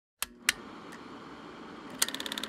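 Two sharp clicks, the second louder, in the first half second, then a faint steady hiss.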